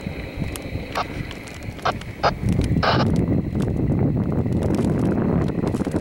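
Hot air balloon's propane burner firing in a long, steady roar that starts a little over two seconds in, after a few short sharp sounds.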